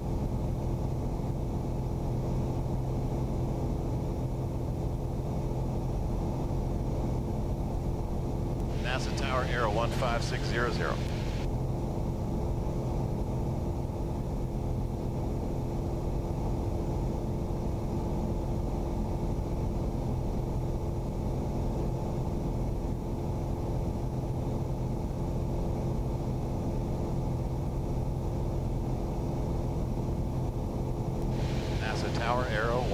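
Piper Arrow II (PA-28R-200) in flight, its four-cylinder Lycoming engine and propeller droning steadily. A short burst of voice, a radio call, comes over it about nine seconds in.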